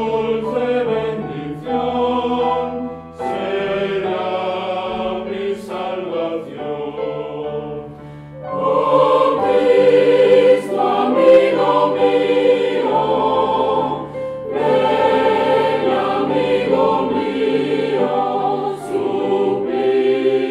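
Mixed choir of women's and men's voices singing together under a conductor, swelling louder about eight seconds in.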